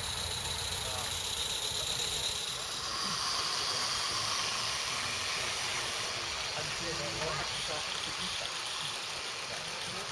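Small 16mm-scale live-steam garden-railway locomotive hissing steam as it runs past, with people's voices faintly in the background.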